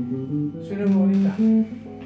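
Les Paul-style electric guitar playing a slow single-note pentatonic phrase with the added ninth, several notes held one after another, the last one fading near the end.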